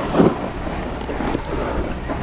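Wind buffeting the microphone of a skier moving downhill, mixed with skis sliding on packed snow: a steady rushing noise with a low rumble and a brief louder gust just after the start.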